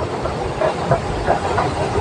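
Railway station ambience in an underground passage: a steady low rumble and hiss with faint, indistinct sounds scattered through it.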